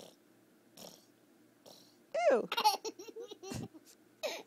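Toddler laughing. About halfway in comes a high laugh that falls in pitch, then a run of short chuckles.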